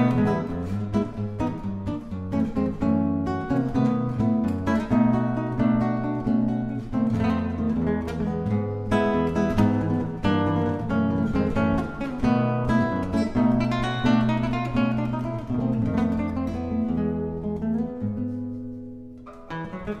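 Solo nylon-string classical guitar, fingerpicked, playing a tango. Near the end the playing softens and dies away for a moment, then a strong new note or chord comes in.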